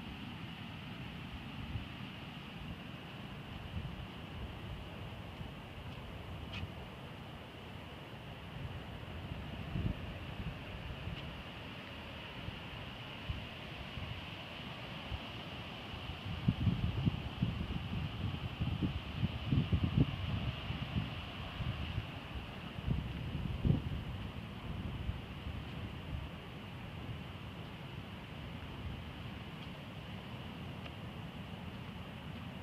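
Wind buffeting the microphone in irregular gusts, strongest a little past the middle, over a steady outdoor hiss and a constant high-pitched drone.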